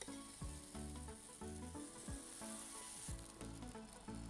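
Chilla batter sizzling on a hot nonstick pan as it is spread out with a ladle, the hiss swelling in the middle and dropping off sharply about three seconds in. Soft background music with a steady beat plays under it.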